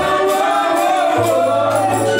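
Gospel worship team singing together through microphones, lead and backing voices holding long sustained notes. A low held note joins just over a second in.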